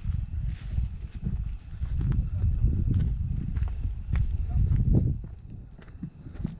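Wind buffeting the microphone in an uneven low rumble, with footsteps through dry grass.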